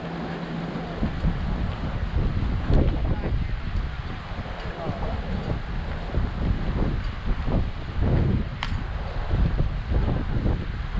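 Wind buffeting the microphone with an uneven rumble, under indistinct voices of players and spectators. A single sharp click sounds near the end.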